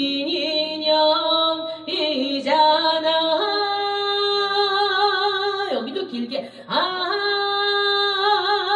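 A woman singing a Korean trot melody into a microphone, holding long notes with a wavering vibrato. She takes short breaks between phrases about two seconds in and again about six seconds in.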